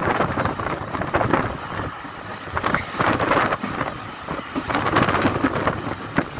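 Rushing wind on the microphone, held out of the window of a moving ÖBB class 5047 diesel railcar, mixed with the running noise of the train on the track; it swells and drops in gusts every second or so.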